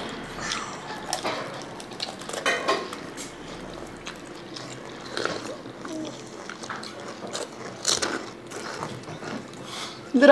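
Crisp panipuri shells cracking and crunching as they are broken open by hand and chewed, in a scatter of short crackles, with light clinks of bowls and spoons.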